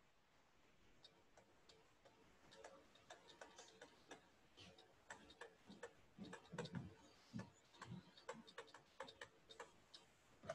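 Faint, irregular ticks and taps of a pen stylus on a tablet surface during handwriting, starting a couple of seconds in; otherwise near silence.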